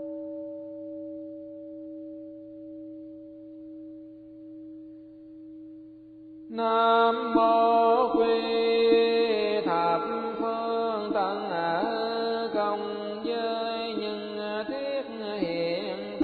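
A steady held tone that swells and fades slowly for about six seconds, then Buddhist chanting with musical accompaniment comes in suddenly and louder, the voice's melody sliding up and down over a sustained backing.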